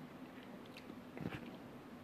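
Quiet room tone with a faint steady hum and a few soft clicks around the middle.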